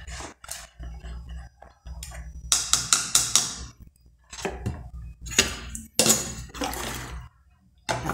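A few short scraping and clattering sounds of a metal spoon at an aluminium pot holding a milky canjica mixture, over a steady low hum.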